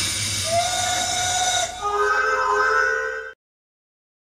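Logo-intro sound effect: a hiss with one held high tone, then a held chord of several tones over the hiss, cut off suddenly a little after three seconds in, followed by dead silence.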